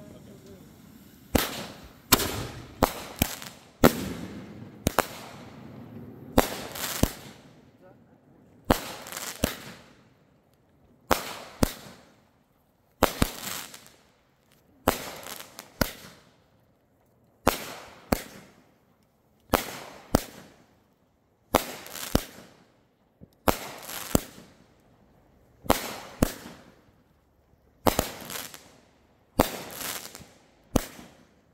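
Aerial fireworks going off in a long series of sharp bangs, each with a short fading tail. The bangs come thick and close together over the first several seconds, then settle into a steady beat of about one every two seconds.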